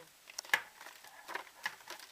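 Plastic blister packaging crinkling and clicking as it is handled, with the sharpest click about half a second in and a few smaller ones later.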